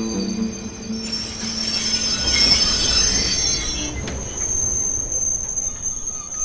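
Railway carriage wheels squealing on the rails: a high-pitched screech with a rushing noise that swells to its loudest around the middle, then a thinner steady squeal that holds on to the end. Music fades out in the first half second.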